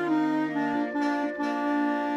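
School wind band, led by saxophones with clarinets and brass, playing slow, sustained chords that change gently.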